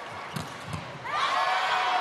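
Arena crowd cheering, swelling up about a second in as a point is won.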